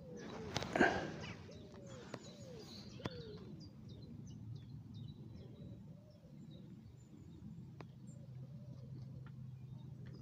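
Birds calling in the background: a run of low, arching notes repeated several times, with faint high chirps. A short rustling burst about a second in and a few light clicks come from the angler pushing out the carbon pole.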